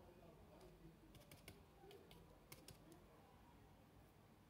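Near silence: room tone with a few faint, light clicks in two small clusters, about a second in and again past the middle.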